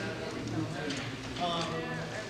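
Indistinct chatter of several people talking among themselves in a large room, away from the microphones, so no words come through clearly.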